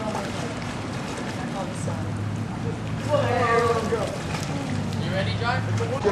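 Outdoor poolside background noise with a steady low hum, and faint, indistinct voices about three seconds in.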